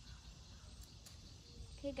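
A faint single snip of small scissors cutting through a long bean's stem, a little before one second in, over quiet outdoor background.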